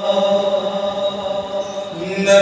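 A man's voice reciting an Urdu naat unaccompanied into a microphone, holding one long, steady note.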